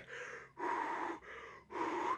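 A man breathing slowly and heavily into his cupped hand, imitating the hollow sound of breath against a plastic mask. There is a short breath, then a longer, louder one about half a second in, and another near the end.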